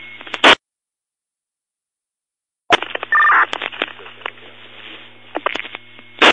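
Fire department two-way radio traffic from a scanner, with no words. A transmission cuts off with a short burst of squelch noise, and after about two seconds of silence the next one keys up. It opens with a short two-pitch beep, then carries hiss, clicks and a low hum before closing with another squelch burst at the end.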